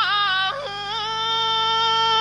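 A single voice singing unaccompanied: a long held note with a slight waver that steps up in pitch about half a second in and is then held.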